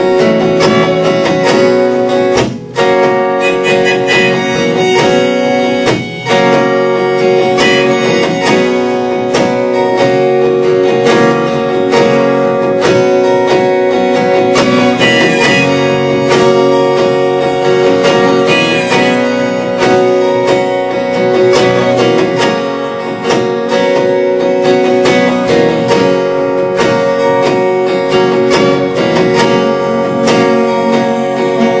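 Acoustic guitar strumming with a rack-mounted harmonica playing a melody over it, with no vocals.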